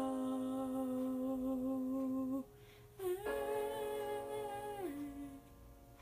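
Female voice humming long, steady held notes at the close of a song. One note is held for about two and a half seconds; after a short pause a second, higher note is held and then drops lower near the end.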